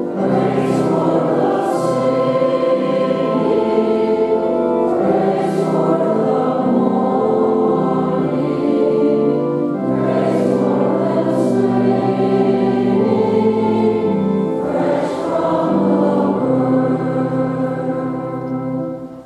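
A church choir of mixed men's and women's voices singing together in long held notes that move slowly from chord to chord.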